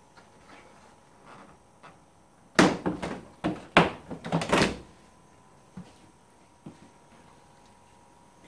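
Plastic side panel of a Yamaha Grizzly 450 quad being pulled off its fastenings: a quick run of loud plastic knocks and snaps starting a few seconds in and lasting about two seconds, followed by a couple of faint clicks.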